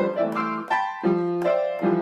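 Electronic keyboard played in a piano sound: a melody of single notes, about seven in two seconds, some held longer than others.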